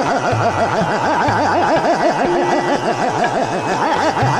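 Hindustani khayal singing in Raag Khat: a male voice runs a fast, rapidly shaken taan on the open vowel 'aa', with deep tabla bass strokes about once a second beneath it.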